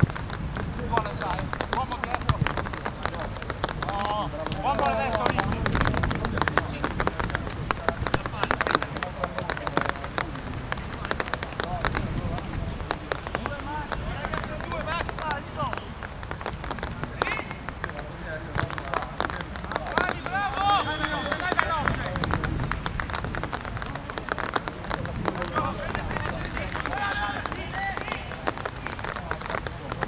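Live pitch sound of an amateur football match: players shouting to one another a few times, over a steady patter of running footsteps on artificial turf.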